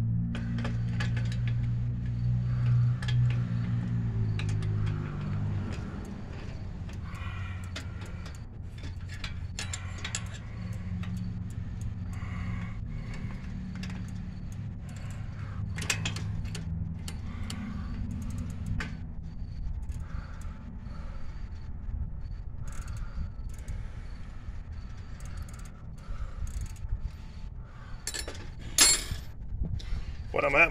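Scattered metallic clicks and clinks of hand tools working on an adult tricycle's rear axle and sprocket, which keeps turning as he tries to loosen it. A low steady hum runs underneath, strongest in the first few seconds.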